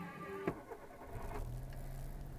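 Car radio music cuts off with a thump about half a second in. About a second and a half in, a steady low engine hum starts up inside the car's cabin.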